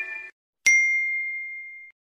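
A single bright ding from a subscribe-button animation's sound effect. It starts sharply about two-thirds of a second in and rings out over about a second, after the intro music's last notes cut off.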